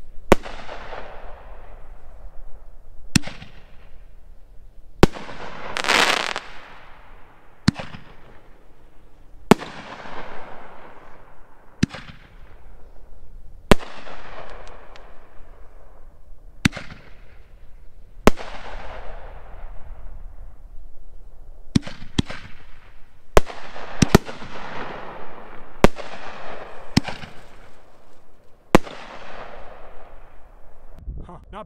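SFX Magnum Artillery 1.75-inch ball shells firing in sequence from a fiberglass-tube rack and bursting overhead: sharp bangs every second or two, each trailing away. There is one longer, louder rush of noise about six seconds in.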